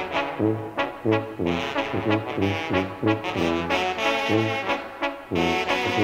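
Banda sinaloense wind-band music: brass playing a tune over a steady bass pulse of about two notes a second. There is a brief drop just after five seconds, then the full band comes back in.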